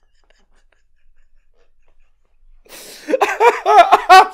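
A man's helpless laughter: near silence, then about two and a half seconds in a sharp intake of breath breaks into rapid, high-pitched pulses of laughter that rise and fall in pitch.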